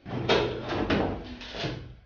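A door being opened: a noisy scraping rattle with several sharp knocks from the handle and latch.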